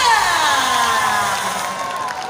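Show soundtrack ending on a pitched tone that slides steadily downward for about a second and a half and fades. Stage flame jets firing give a rushing hiss underneath.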